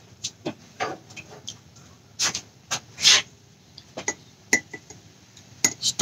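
Handling noise close to the microphone: irregular light taps, knocks and clicks, with a couple of brief rustling scrapes, as things are moved about and searched through.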